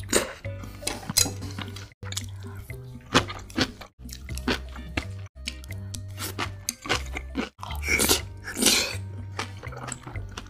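Close-miked eating sounds: wet chewing and smacking of spoonfuls of saucy rice, with a few louder bites, over background music with a steady bass line. The sound breaks off abruptly several times where the footage is cut between bites.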